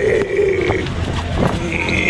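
A person's long drawn-out shout, held on one slightly falling pitch for about a second, then a short high-pitched call near the end.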